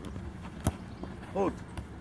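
A single sharp thud of a football being kicked, about two-thirds of a second in.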